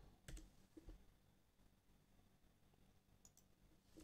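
Near-silent room tone with a few faint clicks from computer input: two in the first second and one near the end.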